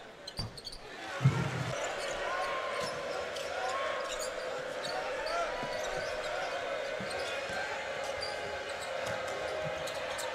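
Basketball arena game sound during live play: a steady crowd murmur with scattered short knocks and squeaks from the court. It starts almost quiet, with a brief low thud a little over a second in.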